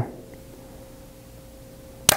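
Quiet room tone with a faint, steady, even-pitched hum and no other events.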